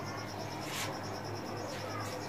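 An insect chirping steadily in the background, a high-pitched pulse repeating about ten times a second, over a low steady hum. A brief soft noise comes just before a second in.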